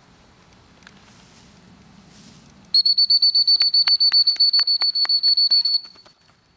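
Dog-training whistle blown in one loud trilling blast of about three seconds, starting a little before halfway in, its high pitch held steady and warbling rapidly, after a few quiet seconds of faint outdoor background.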